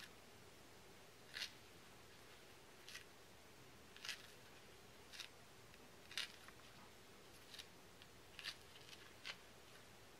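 Faint, short scratches, about one a second, as straight pins are slid sideways and pushed into the thread wrapping of a temari ball and its paper strip, over near-silent room tone.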